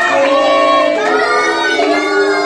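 A birthday song sung in a child's voice, each note held steady for about half a second to a second.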